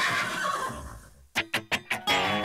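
A horse whinnying, falling in pitch and fading out over about a second. Near the end, quick plucked-string notes begin as the music starts.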